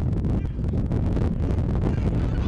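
Wind buffeting the camera microphone: a constant low rumble.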